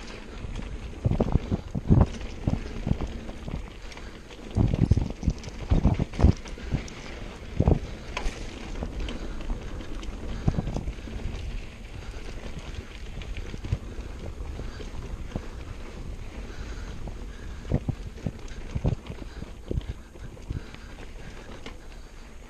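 Mountain bike riding fast down dirt singletrack: steady tyre and wind noise on the microphone, broken by a run of sharp knocks and rattles as the bike hits bumps, thickest in the first eight seconds and again briefly near the end.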